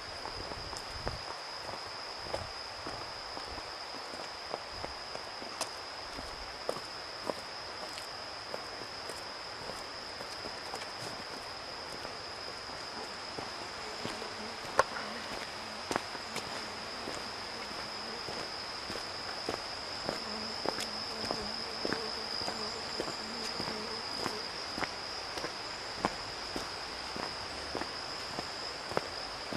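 Insects chirring in one steady, high-pitched drone, a little stronger in the second half, over irregular footsteps on a stone path.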